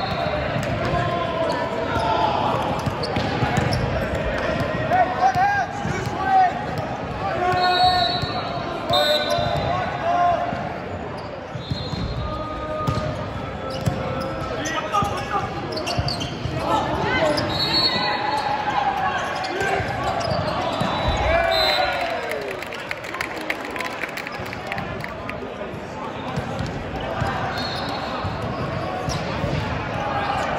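Indoor volleyball rally in a large gym: the ball is struck and bounces on the hard court floor in sharp, repeated hits, while players shout calls. The sound echoes through the hall.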